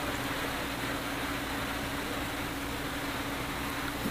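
Steady background hiss with an even low hum, the kind of noise a running fan or air conditioner makes in a small room.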